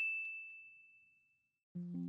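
A bright, high chime ding, struck just before and ringing out as it fades over about a second, as a logo sound effect. Soft sustained music chords start near the end.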